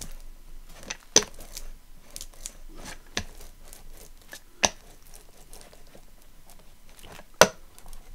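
Hand brayer rolled back and forth over freshly glued paper collage to press down lumps: a steady crackling, crinkly rustle of paper under the roller with small clicks, and three sharper clicks, about one, four and a half, and seven and a half seconds in.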